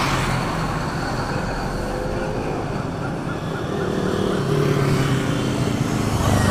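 Motorcycles riding along a road toward and past the microphone, with a steady engine rumble that grows louder over the last few seconds as they draw near.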